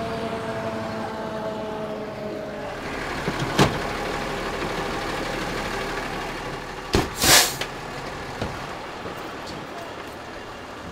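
Fire engine idling as its siren winds down and fades over the first few seconds. A sharp knock comes a few seconds in, and a loud clack with a short burst of noise about seven seconds in.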